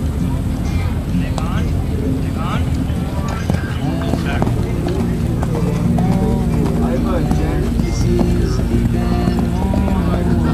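People talking and background music over steady low outdoor noise, with a horse's hoofbeats as it canters on the arena sand.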